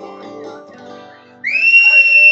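Acoustic guitars let a closing chord ring and fade. About one and a half seconds in, a loud, piercing human whistle cuts in: one long high note that slides up at its start and holds, a shout of approval as the song ends.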